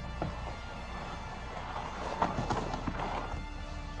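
Background music playing, with rustling and a few short knocks from cardboard packaging being handled around the middle.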